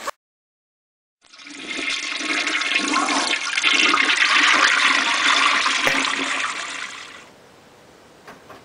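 Toilet flushing: the rush of water starts about a second in, swells to a peak, then drains away and fades out near the end.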